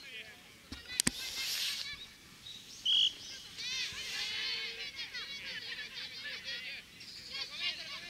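A referee's whistle gives one short, steady blast about three seconds in, over high chirping and calling that carries on throughout. There are two sharp knocks about a second in.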